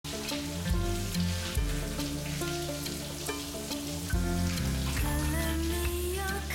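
A shower running, its water spray a steady hiss, under a soundtrack score of held notes; about five seconds in a wavering melodic line joins the music.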